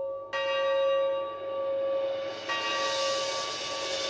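Bell-like chiming tones open a punk rock recording. A ringing chord is struck about a third of a second in and struck again near the middle, where a brighter shimmering wash joins it.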